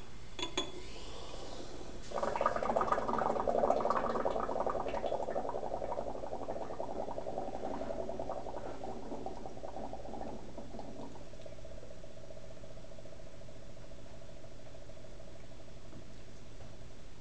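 Zinc pieces clink into a glass flask, then the zinc fizzes and bubbles vigorously in hydrochloric acid as hydrogen gas is given off. The fizzing is loudest for a few seconds and gradually dies down.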